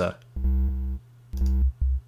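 Ultrabeat drum-synth kick drum playing: two short low hits, the first longer, and a brief click near the end. The kick's sample layer is heavily driven and slightly filtered, giving it a distorted edge, while its sine-wave oscillator layer stays pure and clean.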